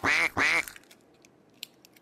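Two duck quacks in quick succession, a cartoon sound effect, each about a quarter second long.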